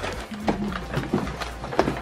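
Packaging rustling and crinkling as a padded mailer is pulled open, with a few short crackles, over background music.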